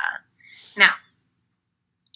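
Only speech: a woman's voice says "Now," after the tail of the previous word, with silence for the rest.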